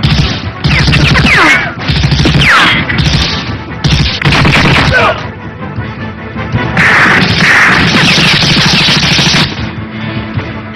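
Action-film soundtrack: gunfire, crashes and blasts in four loud bursts, the longest near the end, over background music.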